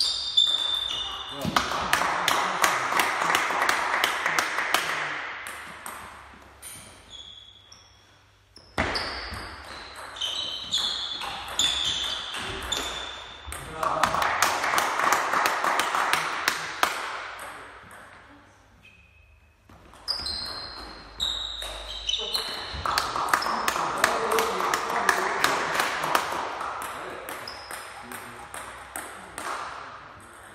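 Table tennis rallies: the ball ticks quickly back and forth off the bats and table in three rallies, one near the start, one about nine seconds in and one about twenty seconds in. After each rally come a few seconds of louder voices.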